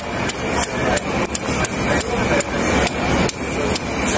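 A rapid series of sharp thumps, about three a second, over a steady noisy background.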